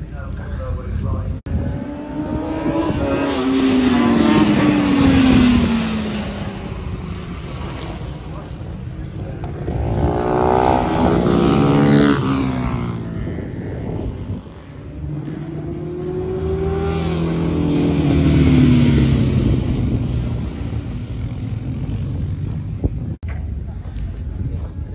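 Racing motorcycles passing at speed on a wet track, three loud pass-bys, the engine note dropping in pitch as each goes by.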